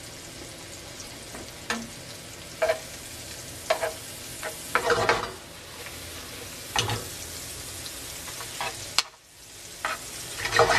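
Sliced celery, onion and scallion frying in butter in a skillet with a steady sizzle, stirred with a utensil that clatters and scrapes against the pan about six times.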